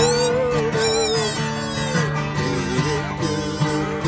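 Two kazoos buzzing a wavering melody together over a strummed acoustic guitar.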